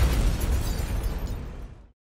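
An explosion-like impact sound effect: a sudden burst with a deep rumble that fades away over about two seconds.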